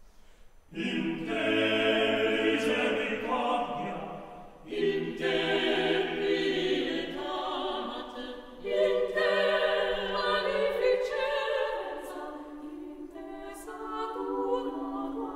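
Mixed chamber choir singing a cappella. After a brief hush the voices come in loud about a second in, with fresh loud entries around five and nine seconds, easing to a softer passage near the end.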